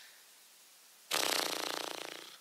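Near silence, then about a second in a sudden rasping, rattling noise that fades away.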